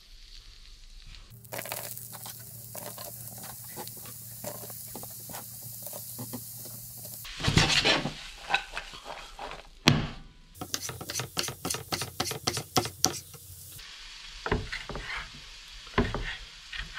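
Garlic butter and then diced vegetables sizzling in a nonstick wok, with quick strokes of a utensil stirring and scraping the pan in the second half. Near the end come a few knife strokes on a wooden chopping board.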